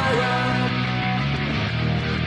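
Punk rock backing track with the drums taken out: distorted electric guitar and bass holding steady chords, with no drum hits and no singing in this stretch.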